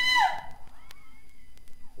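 The tail of a long, very high-pitched cry from a voice, cut off about a third of a second in. A quieter lull follows, with a faint voice and a few faint clicks.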